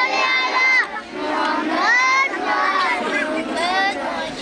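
A group of children's voices chanting loudly together in long, drawn-out phrases.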